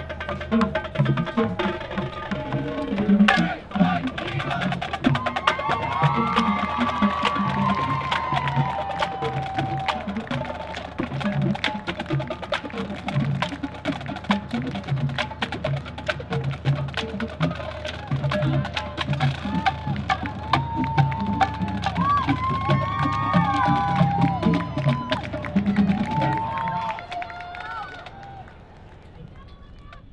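Marching band drumline playing a cadence: rapid sharp stick clicks and snare hits over a steady beat of bass drums, with voices calling over it. It fades out near the end.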